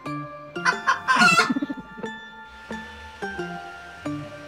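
Soft background music with gentle sustained notes, and about half a second in a loud, rasping crow lasting about a second, like a rooster crowing.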